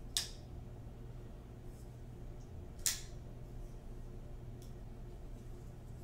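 Custom Knife Factory Gratch flipper knife being flipped open and shut: two sharp metallic clicks of the blade snapping over, about three seconds apart, with a few faint ticks between them.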